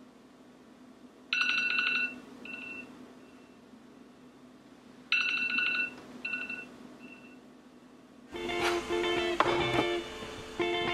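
Smartphone alarm tone sounding twice, about four seconds apart: each time a quick trilling chime followed by two shorter, fainter notes. Background music with guitar starts near the end.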